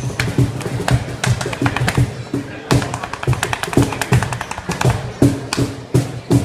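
Dance music with a steady low beat, over it many quick, sharp taps from a dancer's heeled shoes striking a hard floor.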